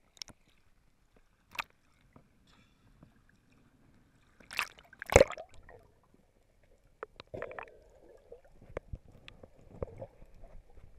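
Water heard through a waterproof action camera's housing as it goes under: muffled sloshing and gurgling with scattered sharp clicks and knocks. The loudest is a sudden burst about five seconds in, with a smaller cluster a couple of seconds later.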